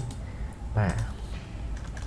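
A few light clicks at the computer, the sound of keys or a mouse button being pressed, with a brief vocal sound just under a second in.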